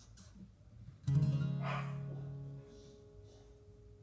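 Acoustic guitar: a single chord strummed about a second in, ringing out and fading away over about a second and a half.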